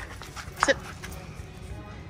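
Faint background music, with one short, sharp spoken command about half a second in.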